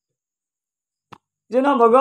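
Near silence, broken by a single short click just after a second in; then, about a second and a half in, a man's voice comes in loudly on a drawn-out vowel that rises and falls smoothly in pitch.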